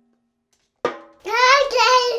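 Silence for almost a second, then a short sharp sound followed by a toddler's very high-pitched voice holding a wavering sung note.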